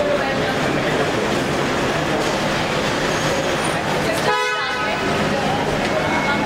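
A car horn toots once, briefly, about four seconds in, over the steady noise and chatter of a crowd in an underground car park.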